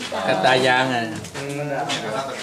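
Speech: people talking in Thai.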